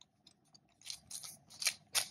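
Hard plastic toy figure with a clear plastic dome being handled, giving a string of short, sharp plastic clicks and rattles, the loudest near the end.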